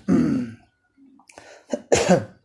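A man clearing his throat once, a short harsh burst near the end.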